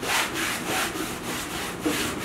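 Paintbrush scrubbing paint onto a painting surface in quick back-and-forth strokes, about three a second, each stroke a dry, rasping brush.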